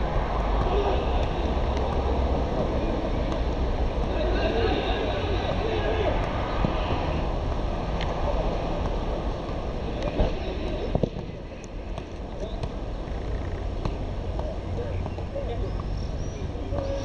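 Steady wind rumble on the microphone with faint, indistinct voices under it, and a few sharp knocks, the loudest about ten seconds in.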